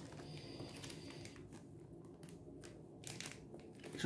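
Faint crinkling and rustling of a small clear plastic bag of puzzle parts being handled, with a few soft crackles.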